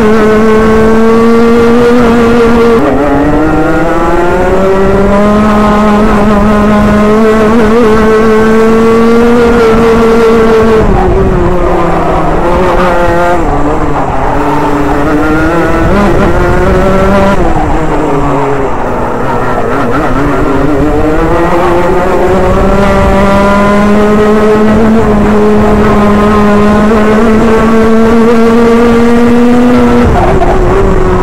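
Onboard sound of a Rotax Junior Max kart's 125cc single-cylinder two-stroke engine at racing speed. Its buzzing note climbs along the straights and falls away into the corners: it drops sharply about three seconds in, sags through a long slow section in the middle, then climbs steadily again toward the end.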